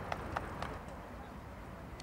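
Three quick, sharp clicks in the first second, then a steady low rumble of outdoor background noise.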